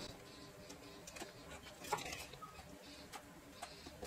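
Faint scattered clicks and light rustles of a plastic sheet being handled, as small rounds of pressed rice-flour dough are cut out with a bottle cap and the scraps peeled away.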